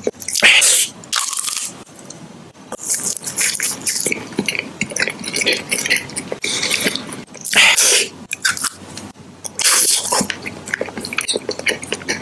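Close-miked ASMR mouth sounds: many small wet lip and tongue clicks, broken by several short, loud breathy hissing bursts.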